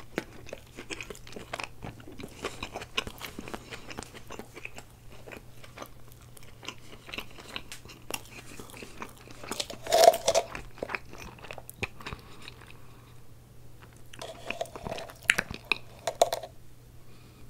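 Close-miked chewing of a bite of a fried spicy chicken sandwich: wet mouth sounds with irregular crunches. About ten seconds in there is a louder burst, and another comes near the end.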